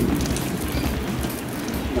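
Garden hose spraying water onto a tree's trunk and leaves, a steady hiss of spray.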